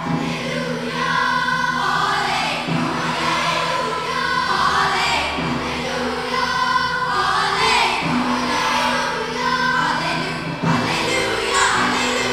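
A large choir of children and adults singing with orchestral accompaniment in a live performance, the full ensemble coming in right at the start.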